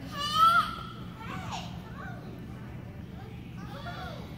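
Young child's loud, high-pitched squeal about half a second in, followed by small children's shorter calls and chatter in a gym.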